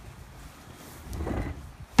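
Faint rustling and handling noise, then one sharp snap near the end, typical of the blades of long-handled garden loppers clacking shut.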